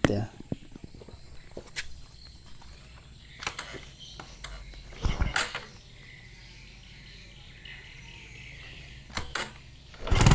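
Quiet background with a few scattered short knocks and clicks, the loudest about five seconds in and a pair just before the end.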